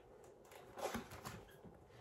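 Faint paper rustling and light ticks from a printed wall calendar being handled, its pages being moved, with the clearest rustle a little under a second in.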